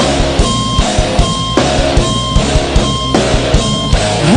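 Rock band playing live: electric guitar and drums in an instrumental passage, with a short riff figure and drum hits repeating about twice a second.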